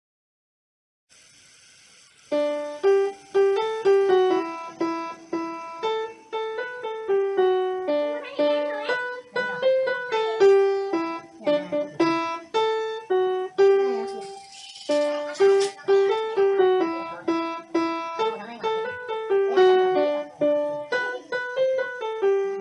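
Upright piano playing a simple melody with accompaniment, one note after another, starting about two seconds in. It pauses briefly with a short rustle near the middle, then the phrase starts again.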